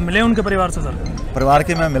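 A man speaking: only speech, at interview level.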